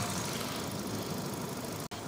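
Small Kia New Morning engine, under 1000 cc, idling steadily with the bonnet open. It cuts off abruptly just before the end.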